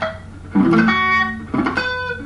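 Telecaster-style electric guitar through an amp playing two short picked phrases about a second apart, each starting with a quick scratch across deadened strings: a rake into a note on the B string at the 12th fret.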